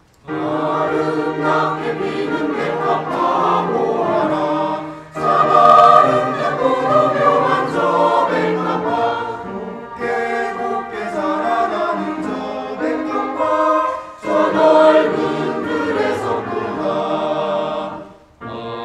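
Mixed church choir of men's and women's voices singing a sacred anthem in sustained chords. The singing comes in phrases, with brief breaks about five seconds in and again near fourteen seconds, and the last phrase ends just before the end.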